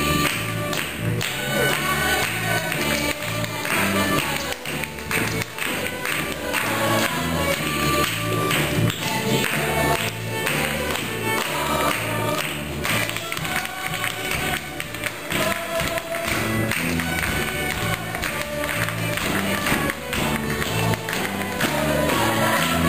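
Live Irish folk-style music with a steady beat and a repeating bass line, a fiddle among the instruments, with a stage cast clapping along in time.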